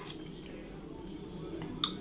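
Quiet room with the faint sound of a man sipping tomato-and-fish stew sauce from a metal spoon, and a short sharp click near the end.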